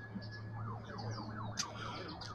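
A distant siren wailing: its tone rises and holds, then sweeps down and up. Under it runs a steady low hum, with a few short bird chirps.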